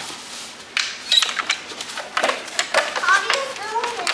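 Sharp clicks and knocks of small metal latches, locks and hinged doors on a wooden exhibit panel being handled, several times, with children's voices in the background.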